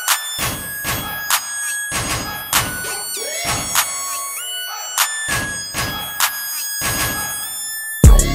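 Instrumental hip-hop background beat: held, flute-like melodic notes stepping up and down in pitch over a deep drum hit about every second and a half.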